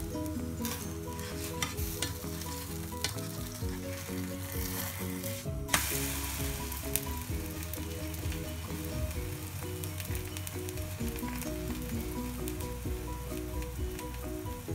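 Thin batter for kita flatbread sizzling and crackling in a hot nonstick frying pan, with a spatula working it in the first few seconds and one sharp click about halfway through. Soft instrumental music plays underneath.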